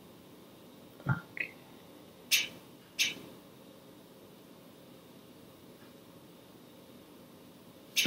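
Quiet room tone broken by a few brief mouth and breath sounds from a person: a short quick upward vocal sound about a second in, then two short hissy breaths a little over two and three seconds in.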